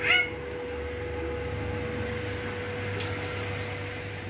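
A single short rising cry right at the start, followed by a steady hum with a low rumble underneath.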